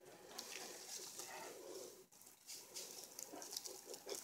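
Faint, uneven rustling with light ticks: paper piñata streamers swishing and crinkling as a cat bats and bites at them.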